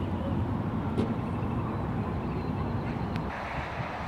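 Caterpillar 416D backhoe's turbo diesel engine idling steadily, with a sharp click about a second in and a fainter one near the end.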